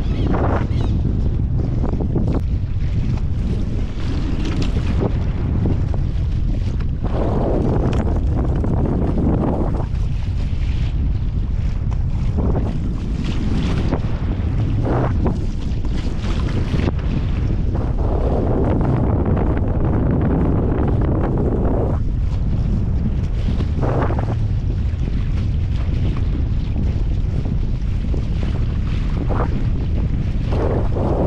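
Strong wind buffeting the microphone, a heavy steady rumble with gusts swelling every few seconds, with small waves lapping against a kayak's hull.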